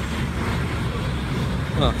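Steady road traffic noise: a continuous rumble and hiss from passing cars, with a brief spoken exclamation near the end.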